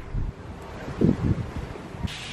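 Wind buffeting the microphone on a cruise ship's balcony at sea: two low, rumbling gusts, one at the start and one about a second in, over a steady hiss of wind.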